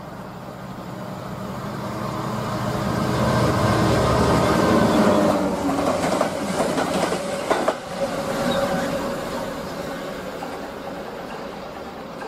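Three Class 66 diesel-electric locomotives run past at speed, coupled together as a light-engine move. The diesel engine note builds to its loudest about four to five seconds in. The wheels then clatter and click over the rail joints as the locomotives go by, and the sound fades as they draw away.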